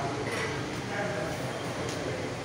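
Steady background noise of a busy city arcade, with faint distant voices.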